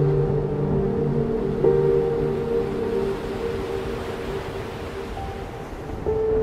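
Slow ambient music: soft, sustained chords, with a new chord entering about two seconds in and fading away, over a steady rushing bed of stormy sea sound.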